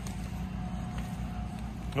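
Engine running steadily, an even low hum with no change in speed.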